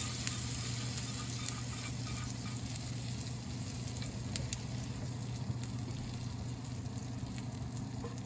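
Hot oil from a just-poured seasoning of fried spices and dried red chillies sizzling: a steady hiss with scattered small crackles and pops, over a steady low hum.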